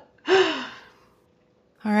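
A woman's breathy, voiced exhale, like a sigh trailing off a laugh, lasting about half a second and falling in pitch, followed by about a second of silence.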